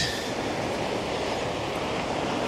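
Steady rushing wash of sea surf on the beach, an even noise with no separate events.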